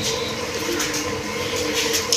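A steady mechanical rumble with a faint even hum running underneath.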